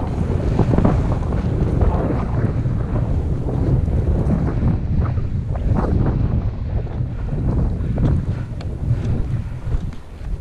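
Wind buffeting a body-mounted action camera's microphone while skiing downhill at speed, a loud steady rumble, with skis scraping and chattering over choppy, cut-up snow.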